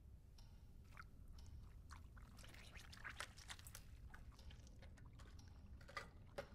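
Faint eating sounds from a soft-boiled ostrich egg being eaten with a spoon: scattered small clicks and scrapes of the spoon with wet chewing.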